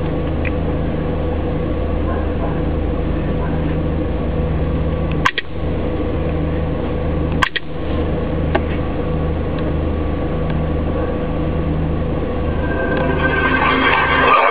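A steady low electrical hum, with two sharp clicks about two seconds apart near the middle. Near the end a film trailer's soundtrack starts playing through the portable GPS unit's small speaker.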